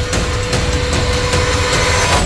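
Loud, dense trailer sound montage: rapid irregular percussive hits over a heavy low rumble, with a held high tone underneath, all cutting off suddenly at the end.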